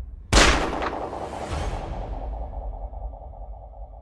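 A trailer sound-design impact: one sudden loud hit with a long decaying boom and swish, followed by a steady electronic tone over a low rumble that slowly fades.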